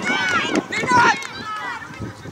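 Footballers shouting calls to each other across the pitch during play: several short, high-pitched shouts overlapping, dying away near the end.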